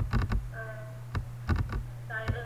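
Several sharp clicks and taps on a computer over a steady low electrical hum, with a brief snatch of voice about half a second in.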